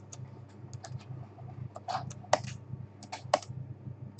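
Computer keyboard keys being typed in short, irregular keystrokes, with two sharper, louder key strikes in the second half, over a low steady hum.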